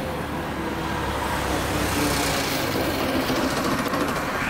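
Street traffic, with a motor vehicle's engine rumble passing close by and swelling slightly through the middle.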